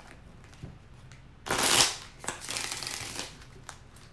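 A deck of reading cards being shuffled by hand: quiet at first, then a short loud flurry of cards about a second and a half in, followed by softer rustling shuffles with a few small snaps.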